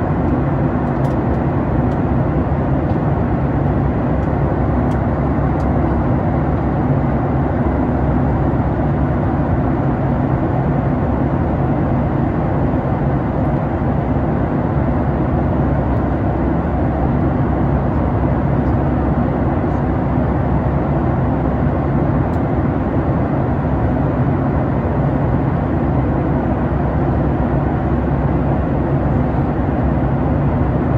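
Steady cabin noise inside a Boeing 737 MAX 8 in flight: the hum of its CFM LEAP-1B engines mixed with airflow noise, unchanging in level and pitch.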